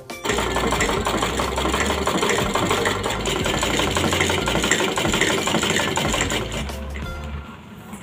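Hand-cranked sewing machine running at a fast, even rattle as it stitches. It starts just after the beginning and stops about a second before the end, with background music underneath.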